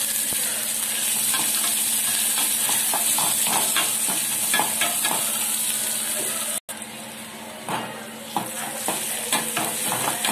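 Sliced onions sizzling in hot oil in an aluminium pot, with repeated scraping and clicking of a metal utensil stirring them. The sound drops out for an instant about two-thirds of the way in, then the sizzle resumes a little quieter, with the stirring strokes carrying on.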